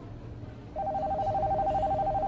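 Telephone ringing: a fast trill of two alternating tones that starts just under a second in and continues steadily.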